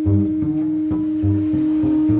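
Alto saxophone and double bass improvising. The bass plucks a run of low notes, about two or three a second, under one long, steady held note.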